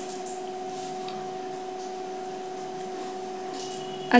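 Hands massaging a grainy oats-and-milk scrub over skin in circular motions: a soft, faint rubbing, over a steady hum.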